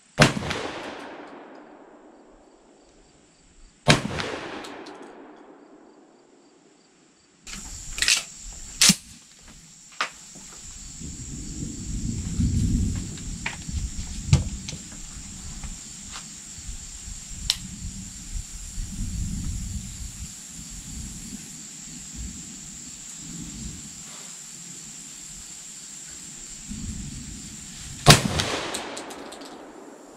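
Three shots from a 12-gauge AK-pattern semi-automatic shotgun (SDS Imports AKSA S4) firing slugs: one at the start, another about four seconds later, and a third near the end. Each is a sharp crack followed by an echo rolling away over a few seconds. Between the shots come a few handling clicks over the steady high buzz of insects.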